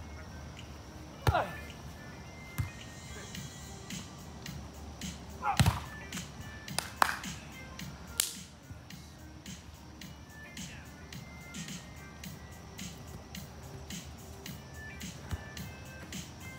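A volleyball struck by hands in a beach volleyball rally: a handful of sharp hits over the first seven seconds, with short shouts from players among them, then a hand slap about eight seconds in. Faint background music plays throughout.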